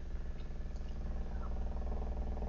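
Faint steady low hum with a buzz of evenly spaced overtones, slowly swelling a little: electrical or machine background noise on the recording.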